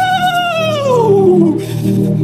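A woman's long, wavering wail into a microphone, held high and then sliding steeply down in pitch until it dies away about a second and a half in.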